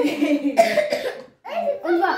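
A child coughing amid children's laughter and chatter, in short bursts with a brief pause about a second and a half in.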